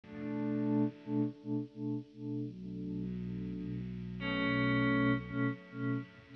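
Electric guitar played through effects with distortion and chorus. It opens with a few short, repeated chord stabs, then lets chords ring out, moving to a new chord about four seconds in.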